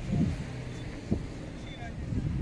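Crowded-beach ambience: a steady low rumble with faint voices of people in the distance, and two brief knocks, about a quarter of a second in and about a second in.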